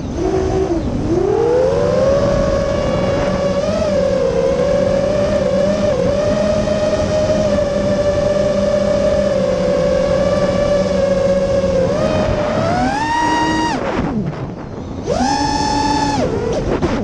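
Brushless motors and 6-inch three-blade props of an FPV racing quadcopter (MCB Primo 2207 2450 kV motors, HQ 6x4.5x3 props) heard from the onboard camera: a steady whine that holds its pitch for about ten seconds, climbs sharply as the throttle is punched about twelve seconds in, dips, then climbs high again near the end.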